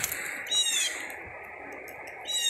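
One short, high-pitched animal call about half a second in, rising and then falling, over faint outdoor background noise.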